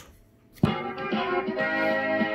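Background music track number 2 from a CB radio caller box starts abruptly with a click about half a second in, after a moment of near silence, then plays held notes.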